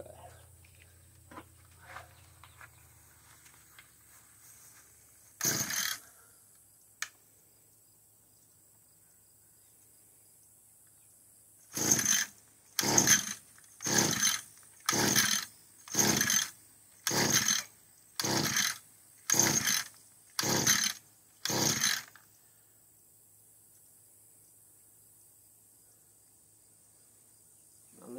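Echo two-stroke string trimmer's recoil starter being pulled: one pull, a pause, then ten quick pulls about one a second. The engine turns over on each pull but never catches: a failure to start.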